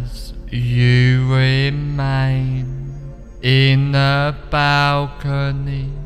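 Low male voice chanting on a nearly steady pitch in drawn-out phrases of about a second each, broken by short pauses, over a constant low hum.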